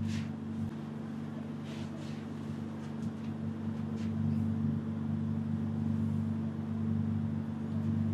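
A steady low hum of room machinery, made of several fixed low pitches, with a few faint, brief noises over it near the start, about two seconds in and about four seconds in.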